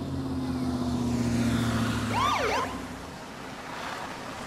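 Police car siren giving a short whoop of quick rising and falling sweeps a little over two seconds in, over a steady low hum that fades out soon after.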